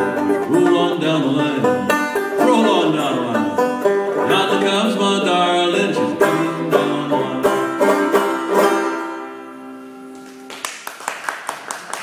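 Open-back banjo playing an instrumental outro with quick picked and strummed notes, which thin out and die away after about nine seconds as the tune ends. Near the end comes a quick run of sharp, even taps.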